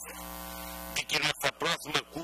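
Steady electrical mains hum from the microphone and sound system, heard on its own in a pause for about the first second. A man's speech starts again over it.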